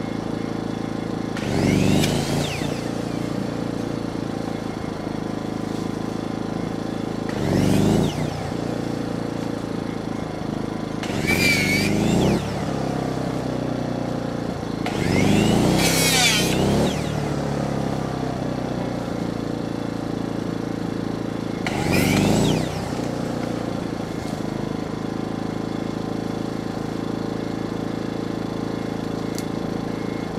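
Chainsaw idling steadily, revved up five times, roughly every five seconds, for short cuts through tree branches. Each rev climbs and falls in pitch over a second or two.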